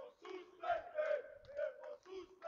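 Serbian football supporters chanting together in a steady rhythm of short shouted syllables, about three a second.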